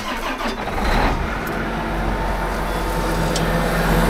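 Diesel engine of a John Deere 9510R four-wheel-drive tractor starting up, its low steady running note coming in about a second in and holding as it idles.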